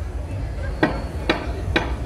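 Three sharp knocks about half a second apart, over a steady low rumble.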